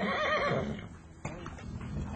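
A horse whinnying once for under a second, loud, its pitch wavering rapidly up and down, followed by a single sharp knock about a second later.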